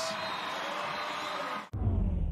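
Arena crowd cheering in a steady roar. It cuts off suddenly near the end into a deep, low whooshing broadcast transition sound effect that begins to fade away.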